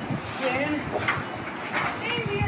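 Indistinct voices talking, with a short knock about a second in.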